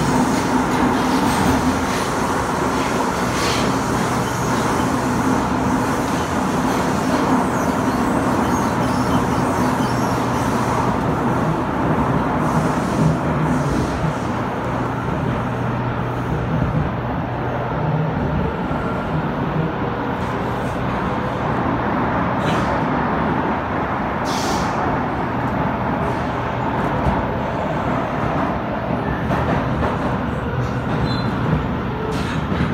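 Steady running noise inside a Kawasaki Heavy Industries C151 metro car moving through an underground tunnel: a low hum over a continuous rumble. A few short sharp sounds come in the second half.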